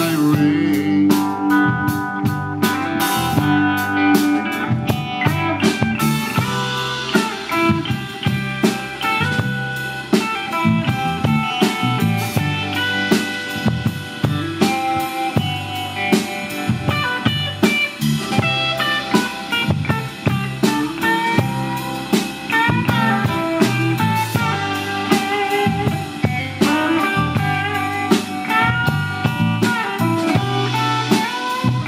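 A live blues band playing an instrumental passage with no singing: electric guitars over electric bass and a drum kit keeping a steady beat.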